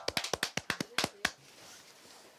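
A few people clapping by hand: about a dozen quick claps that die out after a second and a half.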